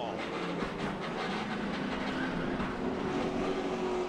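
Inside a NASCAR stock car's cockpit: steady engine drone with a rattling, rumbling noise from the car.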